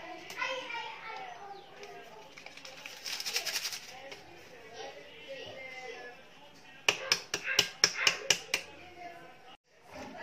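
A plastic sieve of flour being knocked over a plastic mixing bowl to sift it into cake batter: a quick run of about ten sharp taps near the end. Children's voices are in the background.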